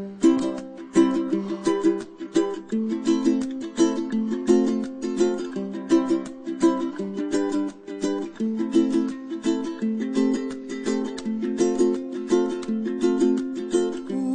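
Background music: a ukulele strumming chords at a steady, even rhythm, with no singing.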